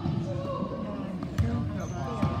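Spectators talking over one another in a gymnasium during a basketball game, with a single sharp knock about one and a half seconds in.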